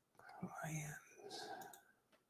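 A man speaking very quietly, close to a whisper, in two short phrases.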